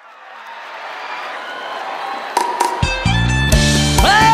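A live band starts the next song: a wash of noise swells for nearly three seconds, then bass, drums and guitar come in loudly about three seconds in.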